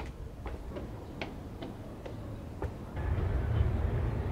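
Footsteps going down concrete steps: light, sharp clicks about two a second. A low rumble joins in about three seconds in.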